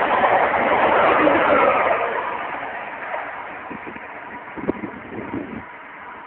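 Electric Euromed passenger train passing close by, a loud steady rush that fades away over the last few seconds as the train recedes.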